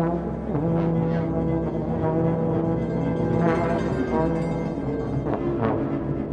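Music: slow, droning trombone passage of long held low notes layered into a sustained chord, the pitches shifting every few seconds with a few short swelling attacks.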